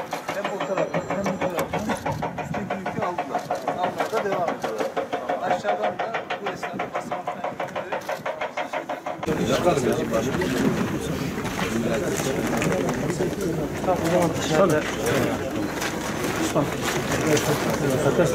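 Indistinct chatter of several people talking at once, growing louder and busier about halfway through.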